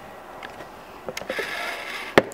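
Handling noise close to the microphone: a few light clicks, then a soft hiss in the last second.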